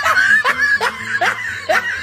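A burst of high-pitched laughter: a quick run of short rising 'ha' calls, about two or three a second.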